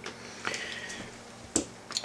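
A few light clicks of small metal tools being handled on a stone countertop, the sharpest about one and a half seconds in: needle-nose pliers and a test-lead clip.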